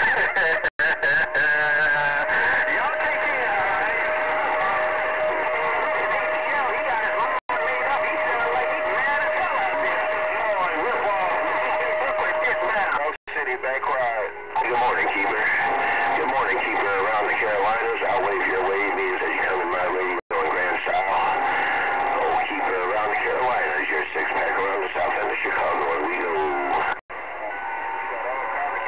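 Galaxy CB radio receiving strong, garbled, overlapping voices from distant stations on the channel, with a steady whistle through the first half. The audio cuts out briefly several times as transmissions drop.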